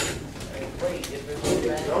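Schoolchildren talking and laughing in a classroom, with a short click near the start.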